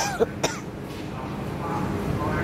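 A person's short throat-clearing coughs, three quick bursts in the first half second, over a steady low background hum.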